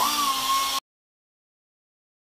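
An air-powered cut-off tool spins up: a quick rising whine that levels off into a steady high pitch over loud air hiss. The sound cuts off suddenly before a second has passed.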